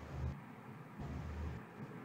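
Quiet microphone background noise with two short, faint low rumbles, one at the start and one about a second in.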